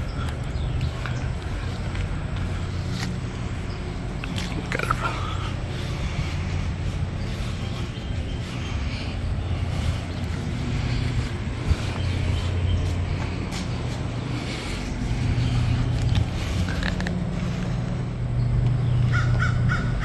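Bird calls: a short call about five seconds in and a quick run of repeated calls near the end, over a steady low hum.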